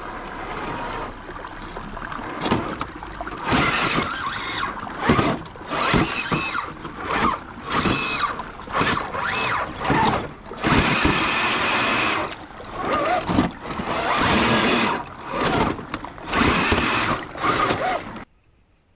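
Axial SCX10 III RC rock crawler's brushless motor and geared drivetrain whining in short on-off throttle bursts, some rising in pitch, as it crawls through shallow water over rock, with water splashing around the tyres.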